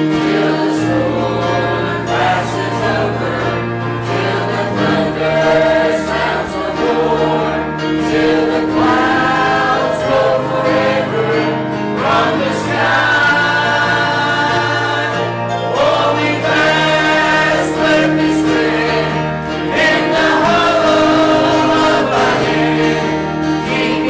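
Mixed church choir singing a hymn together, accompanied by piano and bass guitar, with long held bass notes under the voices.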